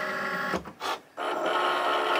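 Cricut Maker's carriage motor whining steadily as the tool carriage slides across its rails, breaking off briefly around the middle and then starting again. The machine is running over to check the tool in clamp B before it starts to cut.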